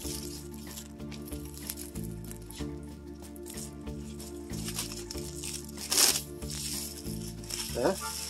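Plastic shrink wrap crinkling and tearing as it is peeled off a vinyl LP sleeve, loudest about six seconds in, over steady background music.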